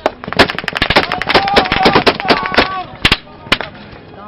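Automatic gunfire: rapid bursts of sharp shots for about two and a half seconds, then two single shots near the end.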